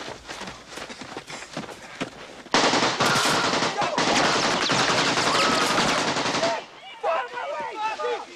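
AK-47 assault rifle firing one long burst of full-automatic fire, about four seconds long, starting a couple of seconds in and stopping abruptly. Men's voices shout just after it stops.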